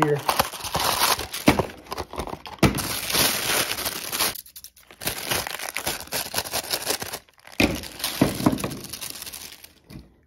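Crinkling and rustling of a printed packaging wrap being unfolded and crumpled by hand while an action figure and its accessories are unpacked from a cardboard box tray. It comes in three bouts, with short pauses around four and a half and seven seconds in.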